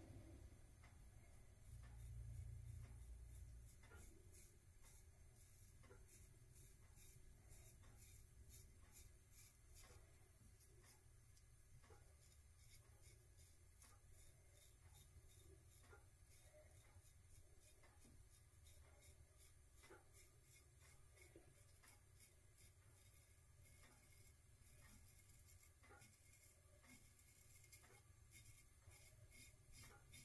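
Near silence, with faint short scrapes every second or two as a freshly stropped Damascus steel straight razor cuts one-day stubble. A brief low rumble about two seconds in.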